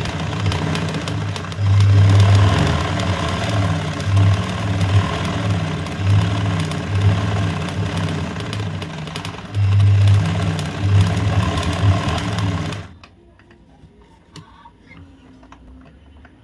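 Domestic sewing machine running in spurts of varying speed, stitching a zigzag embroidery line through cloth stretched in a hoop. It stops abruptly about 13 seconds in, leaving only a few faint ticks.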